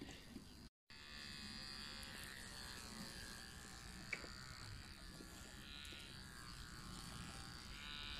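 Electric pet hair clipper buzzing steadily as it is run through a dog's wet, matted coat. The sound starts about a second in, right after a brief silent gap.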